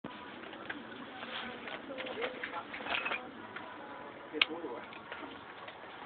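Faint voices and handling noise, with one sharp click about four and a half seconds in.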